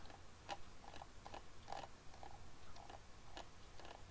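Faint, irregular small clicks and ticks, about two a second, from a computer mouse as the page is scrolled.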